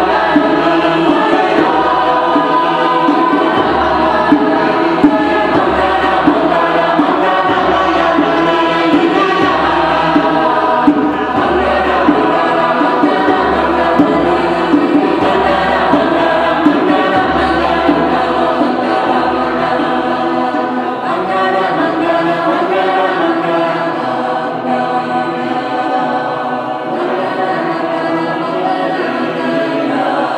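Mixed choir singing in sustained, many-voiced chords, with short sharp accents every second or so. The low part drops out about two-thirds of the way through.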